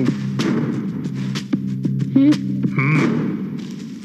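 Film soundtrack: a low, steady musical drone under irregular short sharp knocks, with a boy's brief "oh" sounds about two and three seconds in. The drone fades near the end.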